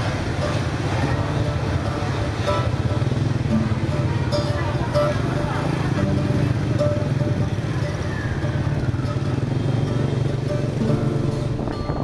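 Motorbike riding through dense city traffic: a steady engine and road rumble, with other motorbikes and street noise around it.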